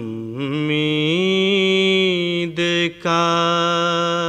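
A solo male voice sings an Urdu hamd, drawing out long melismatic notes whose pitch wavers and glides. There are two short breaks about two and a half and three seconds in.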